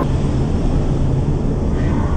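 A room recording turned up and played back slowed down, heard as a loud, steady low rumble.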